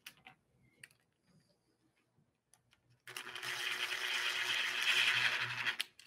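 Cordless drill-driver motor whirring steadily for about three seconds as it drives a small screw into a plywood box to fasten its closure hardware; it starts about halfway through and stops abruptly just before the end, after a few faint clicks.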